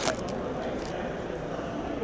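Foil trading-card pack wrapper crinkling as it is torn open: a short burst at the start and a fainter one just before a second in, over the steady murmur of a crowded hall.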